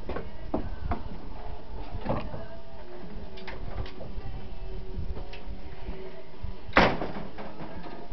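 A scoped rifle fired once: a single sharp crack about seven seconds in. Faint clicks and handling come before it.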